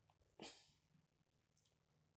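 Near silence: room tone, with one faint, short noise about half a second in.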